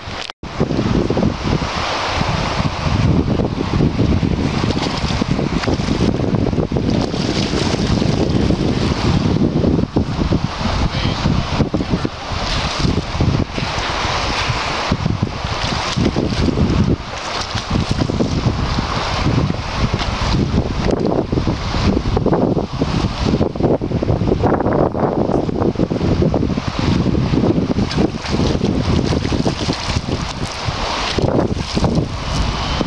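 Wind blowing across the microphone: a loud, uneven rush that rises and falls in gusts, cutting out for an instant just after the start.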